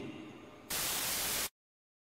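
A short burst of hissing white-noise static, under a second long, that cuts off abruptly into dead silence.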